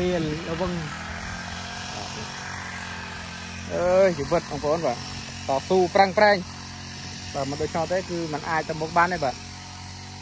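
Small engine of a motorised farm cart running steadily, a continuous drone beneath a man talking in several stretches.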